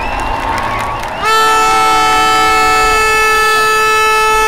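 A loud, steady horn blast held for about three and a half seconds, starting about a second in, over the noise of a large outdoor crowd.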